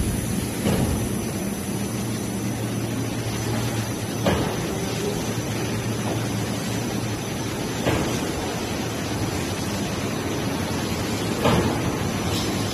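Bar production line machinery running: a steady mechanical hum and whir from the conveyor and cooling tunnel, with a brief knock about every three and a half seconds.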